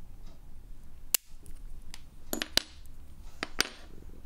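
Sheet glass being nipped and snapped with hand pliers: about six sharp, separate cracks and clinks of glass, the loudest a little over a second in, some with a short ring after.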